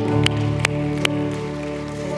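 Soft background music of sustained keyboard chords, with a low bass note coming in at the start. Three light clicks sound about half a second apart in the first second.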